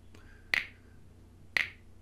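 Two recorded finger snaps about a second apart: Snap!'s built-in 'Finger Snap' sound effect, played by a timer program once for each second it counts.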